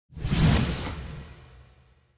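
Whoosh sound effect of a logo sting: one swell of hiss over a deep rumble that peaks about half a second in and fades away over the next second and a half.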